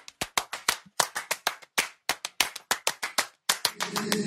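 Rhythmic hand claps in a quick, uneven pattern of about five a second, some louder than others, forming the percussion intro of an a cappella pop song. Sung voices come in at the very end.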